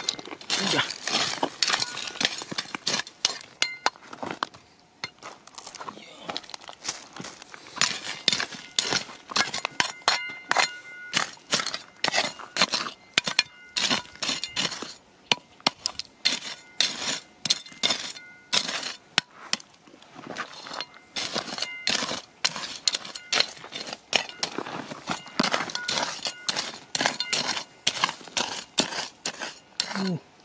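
A small metal shovel digging and scraping through loose broken shale and stones, a dense run of irregular clinks and rattles of rock fragments. Some strikes ring briefly with a metallic tone.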